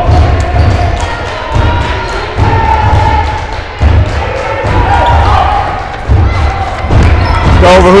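A basketball thumping on a hardwood gym floor in irregular clusters, under a steady din of crowd voices and shouts echoing in the gym.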